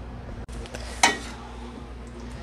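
A utensil clinks once against a stainless steel pot about a second in, over a steady low hum.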